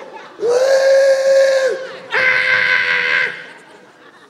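A man's voice on a stage microphone giving two long, held "woo" cries at a steady pitch, each about a second and a half, the second brighter; a comic imitation of a New Year's countdown cheer.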